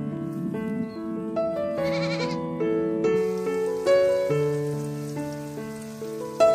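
Background piano music, with a goat bleating once about two seconds in, a short quavering call.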